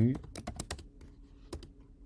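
Typing on a computer keyboard: a quick run of keystrokes in the first second, then a couple more about halfway through.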